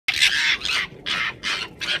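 Arctic foxes screeching while fighting over food: a quick series of about five harsh, raspy calls in two seconds.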